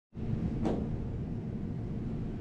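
Steady low room hum, with one short knock about two-thirds of a second in.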